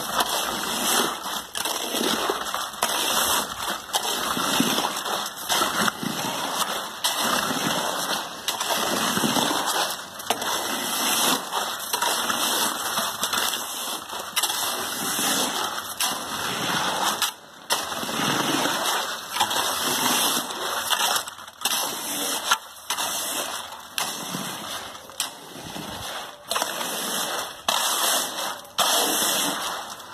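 Wet concrete sloshing and splattering as it is worked into a foundation trench and pile hole, a continuous noisy wash that dips briefly again and again.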